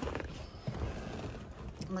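Clothing and seat rustling with a few dull knocks as a person climbs into the driver's seat of a junked car.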